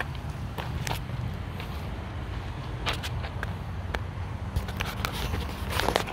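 Footsteps crunching on gravel, a few scattered steps, over a steady low hum.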